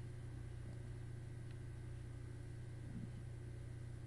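Quiet room tone: a steady low hum under a faint hiss.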